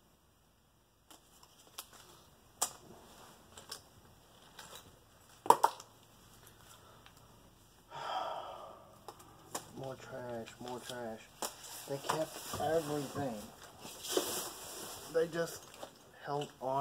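Gloved hands handling a bunch of plastic cards: scattered light clicks and taps, one louder tap about five seconds in. About eight seconds in comes a rustle of paper and cloth as folded money is unwrapped, followed by a man talking indistinctly, with more rustling.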